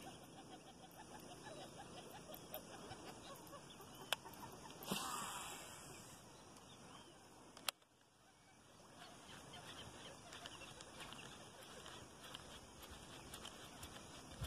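Faint calls of animals from the surrounding marsh, with a sharp click about four seconds in, a brief rustle about five seconds in, and another sharp click near the middle.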